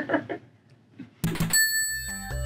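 A brief laugh. About a second later comes a short, sharp burst, then a ringing bell-like chime that holds steady as electronic outro music begins.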